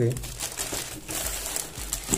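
Plastic packaging crinkling as shrink-wrapped paper pads and a plastic mailer bag are handled and stacked, in irregular rustles.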